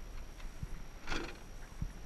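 Quiet handling sounds of a plastic RC car body being set down in a vehicle's cargo area: a few faint clicks and knocks, with one short hiss about a second in.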